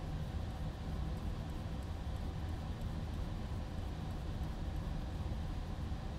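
Steady low background hum, like a room's air conditioning, with a few faint light clicks.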